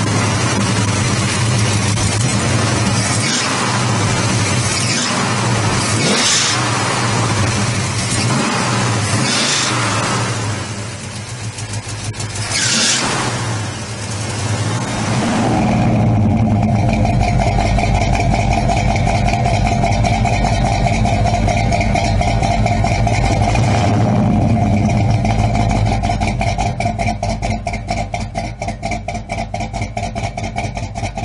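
1967 Pontiac GTO's 400 V8, with a mild cam and twin Edelbrock four-barrel carburettors, running. It is revved in a few blips about three seconds apart during the first half. It then settles into a steady idle through the exhaust with an even pulse.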